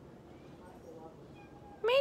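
A house cat meows once near the end, a short, loud call that rises in pitch.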